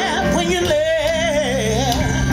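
Live blues band with a woman singing one long held note with wide vibrato, sinking slightly near the end, over electric guitar and band accompaniment.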